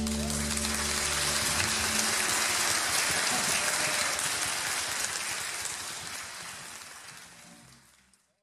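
The band's last chord on piano, bass and drums rings out for about a second and a half, then the audience applauds, fading out near the end.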